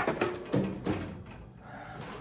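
A drawer of a Seville Classics UltraHD stainless steel rolling cabinet is pushed shut with a sudden clunk, followed by a few lighter knocks over the next second.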